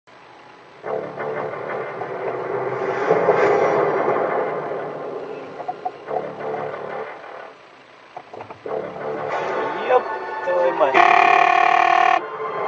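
Indistinct voices mixed with music, as from a car radio, in the cabin of a moving car. About a second before the end comes a loud, steady sound made of several held tones at once.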